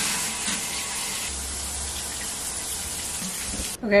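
Shower running: a steady spray of water from a rain showerhead onto a tiled shower stall. It cuts off suddenly near the end.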